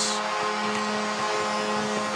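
Arena goal horn sounding one steady multi-note chord over crowd cheering, signalling a home-team goal.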